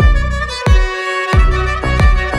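Background music: a sustained melody over a beat with deep bass-drum hits about every two-thirds of a second.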